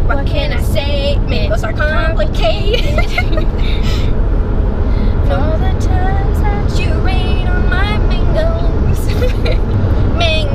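Steady low road rumble inside a moving car's cabin, under women talking.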